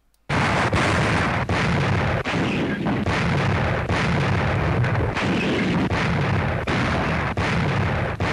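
Massed artillery barrage on an archival newsreel recording: dense, continuous heavy gunfire that starts abruptly a moment in, with no single shot standing out.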